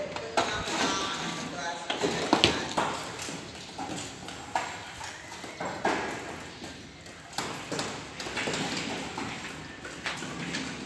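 Hammers striking brick walls during demolition: irregular sharp knocks, about one every second or so, with loose masonry clattering down.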